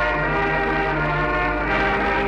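Slow band music playing long, held chords with a low sustained note underneath.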